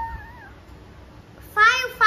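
A young child's high-pitched whining cry: a thin wavering whine trailing off at the start, then a loud wail breaking out about one and a half seconds in.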